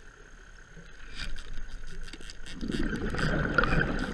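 Underwater sound as a diver snares a spiny lobster with a pole: a run of sharp clicks and knocks starts about a second in, then a louder rushing, bubbling noise builds toward the end.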